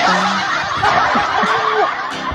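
Loud, breathy laughter that starts suddenly, heard through a live stream's audio.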